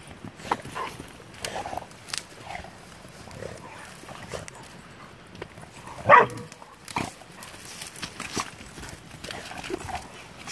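Pit bulls play-fighting, with scattered short dog noises and scuffling throughout and one short, loud bark about six seconds in.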